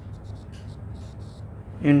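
Stylus writing on a tablet screen: a run of faint, short scratching strokes as letters are written. A man's voice starts near the end.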